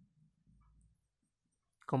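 Faint pencil writing on a textbook page, with a few small ticks, in the first second; then quiet until a word of speech begins near the end.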